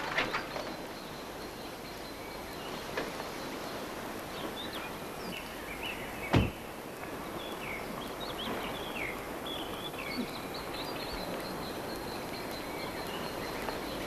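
Birds chirping over a steady outdoor background. A single loud thud about six seconds in is a car door shutting.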